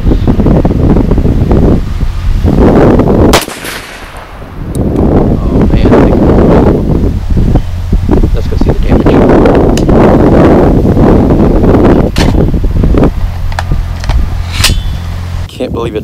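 One shot from a muzzle-braked .50 Krater semi-automatic rifle about three seconds in, over a loud rumbling of wind on the microphone, with a couple of sharp clicks near the end.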